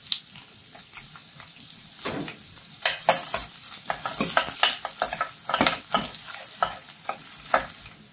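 A metal perforated spoon scrapes and taps against a stainless steel kadai while stirring chopped garlic frying in oil, over a light sizzle. The scrapes come often from a couple of seconds in.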